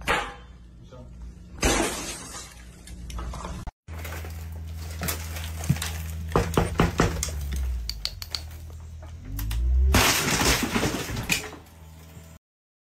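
A hammer strikes a sheet of glass, which shatters twice, about a second and a half apart. After a cut, a steady low engine rumble runs under scattered knocks and clatter, with a loud crash near the end.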